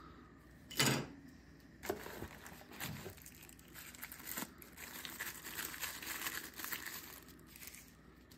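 Hands handling and unwrapping a small paper-wrapped accessory: a brief louder handling sound about a second in, then a few seconds of wrapping crinkling and tearing.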